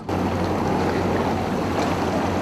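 Motorboat engine running steadily, a low hum under a rushing noise of water.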